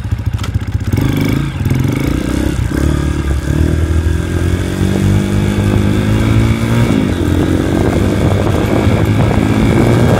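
Modified Honda motocross dirt bike engine running just after it has been started, heard close up from the handlebars. It pulls away under throttle: the pitch climbs from about three seconds in, drops sharply about seven seconds in, then climbs again.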